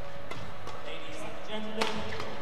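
Badminton rally: a few light racket strokes and shoe squeaks on the court, then a sharp, loud jump-smash hit on the shuttlecock near the end.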